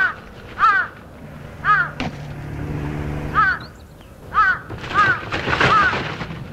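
A crow cawing: about seven short calls at uneven intervals, each rising and then falling in pitch. A faint low steady drone runs under them between about one and four seconds in.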